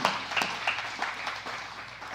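Congregation applauding, a dense patter of clapping that dies down toward the end.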